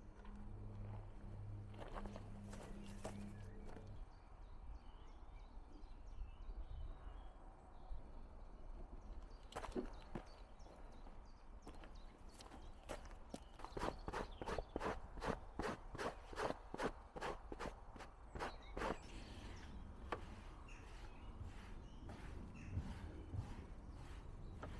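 Footsteps on rough ground and scattered knocks and rustles as belongings are handled and lifted out of a van, with a quick run of steps or knocks in the second half. A faint low hum stops about four seconds in.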